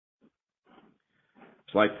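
A pause in speech heard over a telephone line: near silence with a few faint soft sounds, then a man's voice resumes near the end.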